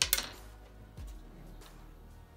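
Hands handling a 3D-printed plastic gearbox arm on a stepper-motor test rig: a sharp click at the start and a dull knock about a second in, over a faint low hum.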